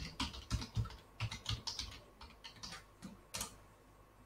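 Typing on a computer keyboard: a quick run of keystrokes entering a short terminal command, thinning out after about two seconds, with one last firm keystroke near the end.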